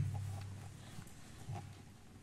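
A short pause in a man's sermon. The echo of his last word dies away, leaving a low hum and faint room noise, with one soft low knock about halfway through.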